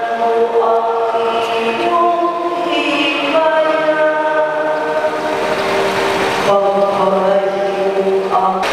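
A choir singing slow, long-held notes that move from one chord to the next every second or two.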